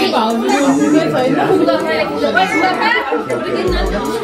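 Several voices, adults and children, talking over one another in a room: indistinct party chatter.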